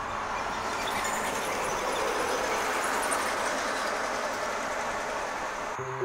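Steady rushing outdoor noise that swells about a second in and then holds, with a faint high whine over it.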